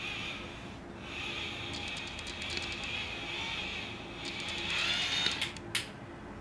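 Electric facial cleansing brush running against the skin, a steady whirring buzz that drops out briefly about a second in. Near the end it gets louder and rises, with a few sharp clicks from handling.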